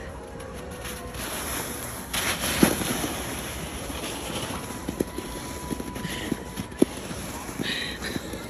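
Blue plastic saucer sled sliding over snow under a man lying on it: a steady scraping hiss, with a few short knocks along the way.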